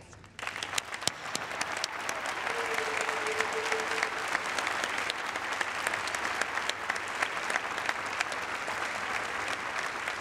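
Audience applause. It breaks out about a third of a second in, swells over the first couple of seconds and then holds steady. A brief steady tone sounds through it around three seconds in.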